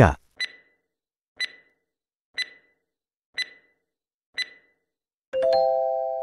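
Quiz countdown timer sound effect: five short, high ticks, one each second, then a ringing chime just after five seconds that marks the end of the answer time.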